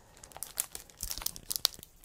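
Matted art prints being picked up and shuffled by hand: a run of light rustling and crinkling with scattered small ticks, busiest in the second half.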